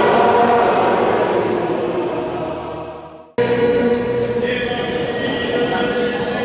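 A choir and congregation singing in the long echo of a cathedral nave, fading away in the first half. The sound breaks off abruptly about three seconds in, and a new passage of steady, held musical tones follows.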